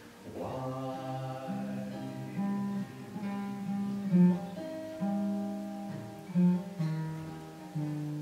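Slow music on an acoustic guitar, with held notes of a sung melody over it.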